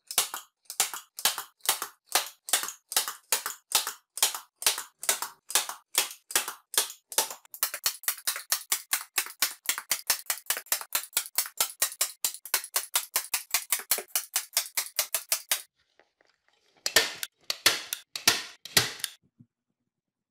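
Handheld staple gun firing staples through an upholstery covering into a wooden frame: a long run of sharp clacks, about two a second at first and then about five a second. They stop briefly, and a few more come near the end.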